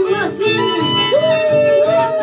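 Andean shacatán music: a woman sings in a high voice, holding one long note from about a second in, over the steady plucked bass rhythm of an Andean harp.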